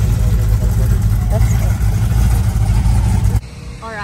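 Engine of a lifted vintage Willys pickup running with a steady deep rumble, cut off suddenly about three and a half seconds in.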